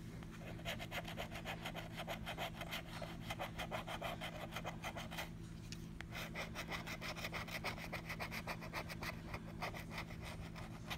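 Metal scratcher tool scraping the coating off a scratch-off lottery ticket in quick, repeated strokes, with a short pause about five seconds in.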